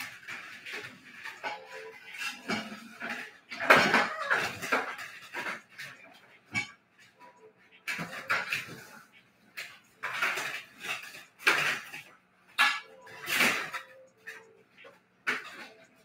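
Irregular clattering, knocks and rustling of objects being handled and moved, with louder bursts about four seconds in and near the end.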